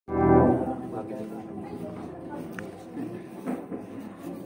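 Live band in a large hall: a loud held chord right at the start that drops away within half a second, then quieter scattered notes from the instruments with low voices underneath.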